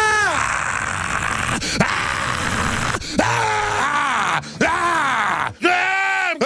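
A man yelling in a hoarse, strained voice: a run of long wordless bellows, each rising and falling in pitch, with brief breaks between them.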